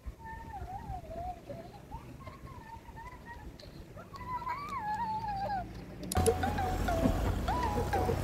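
A young child's high voice singing a wavering tune. About six seconds in, the sound cuts suddenly to the inside of a moving car: a steady low engine hum with louder voices.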